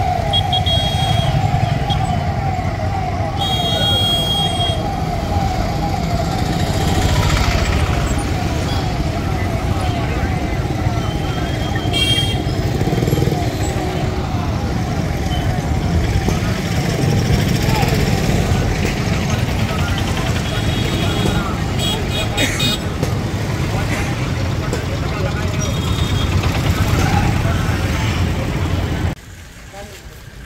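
Police siren yelping in fast, repeated sweeps over loud street noise of engines and traffic. The siren fades over the first half. The sound drops off suddenly near the end.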